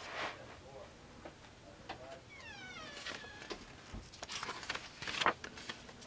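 Paper pages of an art journal being handled and turned, with soft rustles and flicks that are loudest near the end. About two seconds in, a short high call falls in pitch for under a second.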